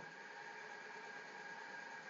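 Faint steady hiss with a thin constant hum-like tone: the room tone and noise floor of the recording microphone.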